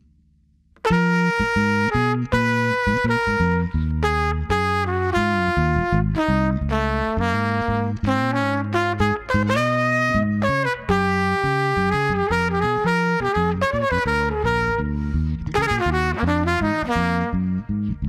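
Jazz combo playing, with a trumpet carrying the melody over bass, drums and Rhodes electric piano. The music starts suddenly about a second in.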